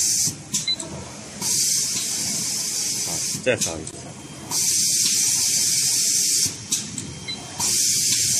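Hissing blasts of air from a paper-tube inkjet printing machine, each lasting about two seconds and coming round about every three seconds as the machine cycles.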